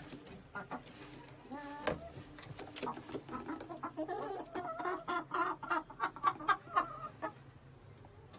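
Giriraja hens clucking: one short call about two seconds in, then a quick run of repeated clucks from about three to seven seconds, loudest near the end.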